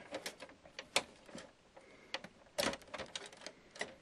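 Small plastic clicks and taps as hands work the printer's plastic housing and unplug the scanner's cable connectors from the control board: a sharp click about a second in, a quick cluster of clicks a little past the middle, and another click near the end.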